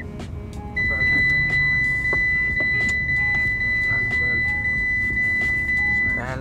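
A car's electronic warning tone: one steady, high-pitched beep held on and on, cut off for under a second near the start and then sounding again without a break. Music plays faintly underneath.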